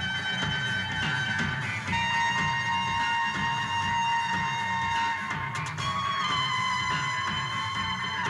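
Post-punk band playing live: long held lead notes that step to a new pitch twice, over a pulsing bass and drums.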